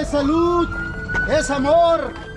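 A voice calling out over music.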